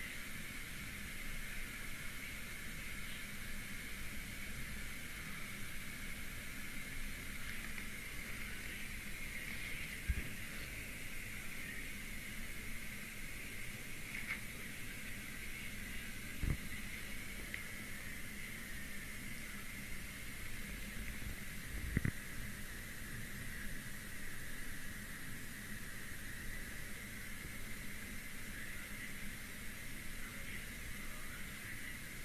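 Steady low background hiss with a faint hum, broken by three soft, short thumps a few seconds apart.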